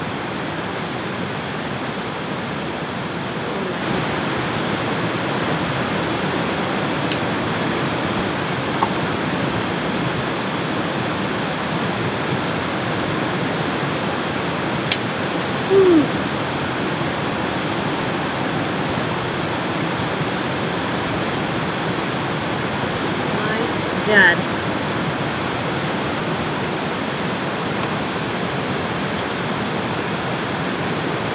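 Steady rushing of running water, with a few faint clicks of a chef's knife cutting through steak onto a wooden board.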